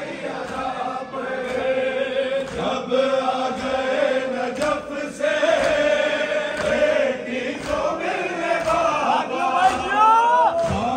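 A crowd of men chanting a mourning noha together, many voices holding long lines in unison around a leading voice, with a few sharp claps or thumps among them. Near the end single voices rise sharply in pitch.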